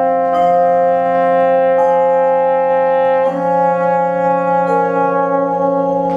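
Contemporary chamber ensemble with a French horn holding slow, sustained chords. The chord shifts to new notes about every second and a half.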